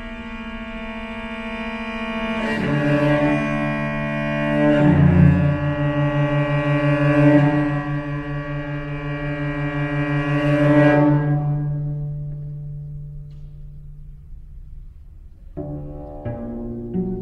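Solo cello playing long bowed notes with vibrato, often two strings at once. The notes swell and then fade away, and plucked notes begin just before the end.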